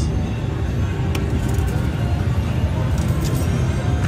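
Casino floor ambience: a steady low rumble of machines and crowd with slot machine music, and a few light clicks.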